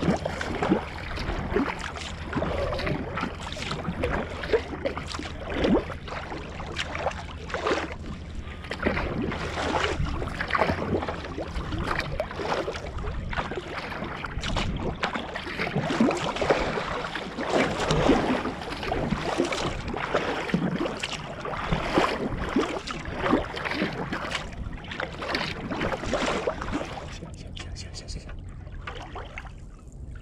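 Sea kayak paddle strokes splashing and water rushing along the hull as the kayak is paddled hard, with a steady low rumble of wind on the microphone. The splashing eases off in the last few seconds as the kayak slows.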